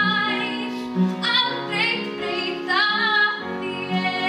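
A young female voice singing a slow melody with vibrato, accompanied by an upright piano.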